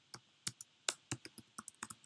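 Computer keyboard typing: about a dozen quick, irregularly spaced keystroke clicks as a short terminal command is typed out.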